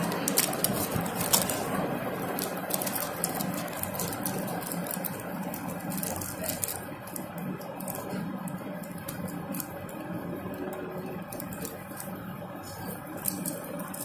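Small clear plastic seed packet crinkling and clicking as fingers handle it and pick out seeds, in irregular little crackles over a steady background hum.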